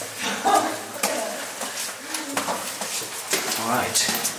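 Indistinct voices talking in a narrow rock tunnel, with a few scattered clicks and scuffs of footsteps on the stone steps.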